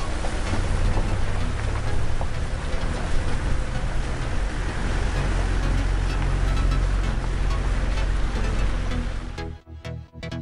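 Steady low rumble of a vehicle's engine and tyres on a rough dirt road, heard from inside the vehicle, with music underneath. Near the end it gives way to electronic dance music with a steady beat.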